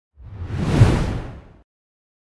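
Whoosh sound effect for an animated logo reveal: one deep, noisy swell that builds to a peak just under a second in and fades away by about a second and a half.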